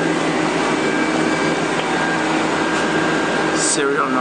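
Steady hum of running shop machinery, an even noise with a few steady tones.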